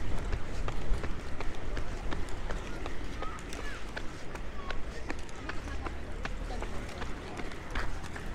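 Inline skates rolling and striding on asphalt, with a steady low rumble and scattered sharp clicks, and people's voices in the background.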